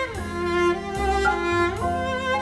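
Cello playing a slow melody over an ensemble, sliding down in pitch at the start and sliding back up near the end, with low bass notes underneath.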